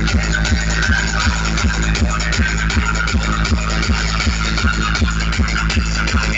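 Electronic dance music played loud through a large DJ speaker rig, with a heavy, steady bass and a booming kick that drops in pitch about two and a half times a second.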